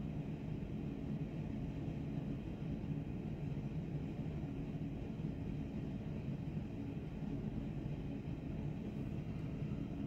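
A steady low background rumble with a faint hum in it, even throughout, with no distinct sounds standing out.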